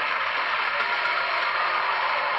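Studio audience applauding, a steady dense clatter of many hands.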